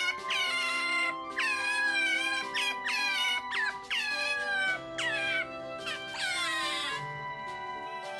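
Otter pup crying for its mother: a string of high-pitched calls, each one falling in pitch, coming about every half second and stopping about seven seconds in. Background music plays throughout.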